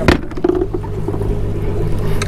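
Evinrude outboard motor idling with a steady low hum. A sharp knock comes just after the start, followed by a few lighter clicks.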